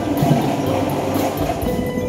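Winter percussion ensemble playing: held tones over low drum hits.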